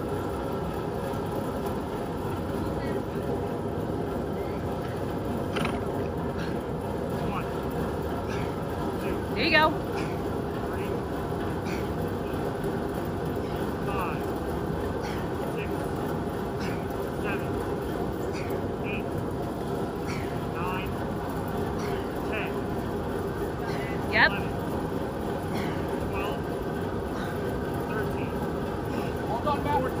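Large drum fan running with a steady, even hum. Two short, sharp louder sounds come through, about ten seconds and about twenty-four seconds in.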